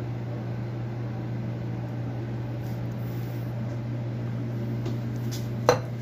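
A steady low machine hum, with one sharp clack near the end as a stainless steel milk pitcher is set down on the counter.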